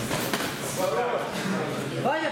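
Men's voices calling out in a large, echoing boxing hall, with a single sharp slap about a third of a second in.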